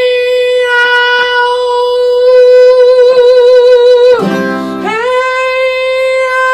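Vocal exercise: a singer holds one high note through changing vowel sounds, with acoustic guitar accompaniment. About four seconds in, the note breaks off for a brief lower guitar chord, then the same note comes back and is held again.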